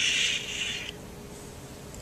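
A person shushing: one long "shhh" that stops about a second in, leaving only faint room noise.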